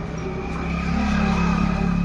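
A motor engine running steadily with a low, even hum, growing louder about halfway through.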